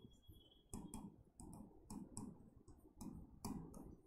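Pen nib writing on an interactive display board: faint, irregular clicks and scratches, a few a second, as the strokes of handwriting tap and drag across the screen.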